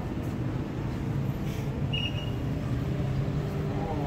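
Steady low machine hum from running equipment, with a brief high-pitched chirp about two seconds in.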